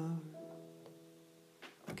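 A synth chord held and slowly fading under a solo voice, the sung word 'start' trailing off at the beginning. A higher note joins about half a second in, and a short noisy sound comes near the end just before the singing resumes on 'again'.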